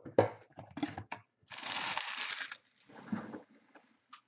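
Trading cards and their packaging being handled on a table: a few light taps and clicks, then about a second of steady rustling and a shorter rustle after it.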